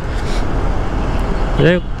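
A motorcycle riding through city traffic, heard from the rider's seat: a steady, even rush of engine, road and wind noise. A man's voice comes in near the end.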